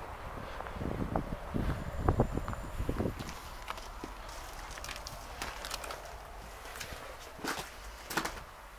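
Footsteps in snow for the first three seconds, dull and low. Then sharper clicking and cracking steps over charred debris on the floor of a fire-gutted building.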